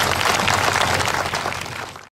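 Audience applauding, a dense patter of many hands clapping that fades out near the end.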